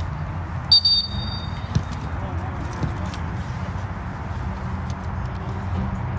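Floodlit soccer-field ambience: a steady low rumble with distant players' voices, broken about a second in by a brief high whistle and a few soft thuds.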